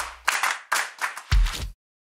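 Sharp hand claps, several in quick succession, with a deep thump about a second and a quarter in; the sound cuts off suddenly shortly after.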